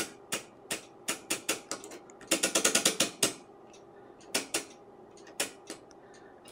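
Detent clicks of a Tektronix 475 oscilloscope's TIME/DIV rotary switch turned by hand through its sweep settings: scattered single clicks, a fast run of about ten clicks in the middle, then a few more near the end.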